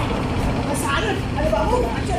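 A voice in short broken phrases over a steady low rumble.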